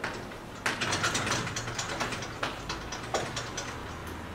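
Chalk writing on a blackboard: a quick, uneven run of taps and scratches as the chalk strikes and drags across the board, starting well under a second in and stopping shortly before the end.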